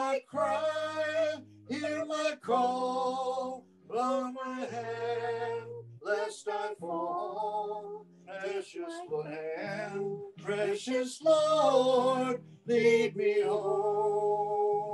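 A woman singing solo with strong vibrato in long held phrases, over sustained low accompanying notes.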